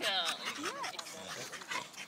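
A dog whining: a few short, high-pitched whimpers that rise and fall in pitch.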